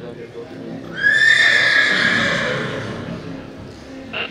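A horse whinnying: one loud, high call about a second in that rises a little, holds, then fades over about two seconds.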